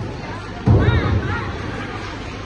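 A short, loud vocal exclamation about two-thirds of a second in, rising and falling in pitch, over steady background music and crowd chatter in the rink.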